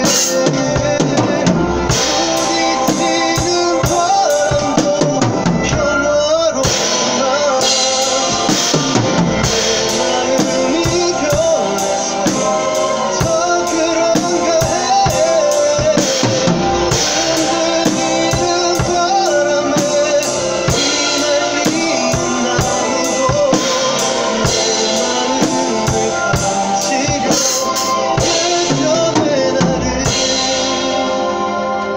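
Acoustic drum kit played with sticks along to a recorded pop song: steady beat of bass drum, snare and cymbal hits over the song's melody.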